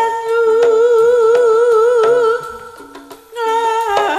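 A Javanese sinden's voice holding a long wavering note through a microphone in East Javanese tayub music, over gamelan accompaniment with light percussion taps. The voice breaks off about two and a half seconds in and comes back about a second later.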